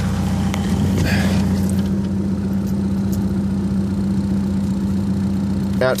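VW ALH 1.9 TDI four-cylinder diesel idling steadily. This is the smooth idle after a shorted anti-shudder valve solenoid wire, the cause of its P3105 code and rough idle, was repaired.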